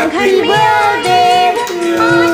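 A high singing voice carrying a melody, holding long notes that bend and waver.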